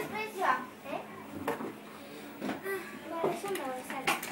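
Children's voices: scattered bits of talk and calls at a lower level than the surrounding speech, heard in an enclosed room.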